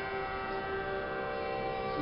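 Harmonium holding a steady chord of several sustained notes.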